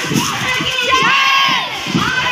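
A crowd of children shouting a slogan together, one long drawn-out call in unison through the middle.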